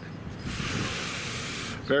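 A sharp, steady hiss lasting about a second, starting and stopping abruptly.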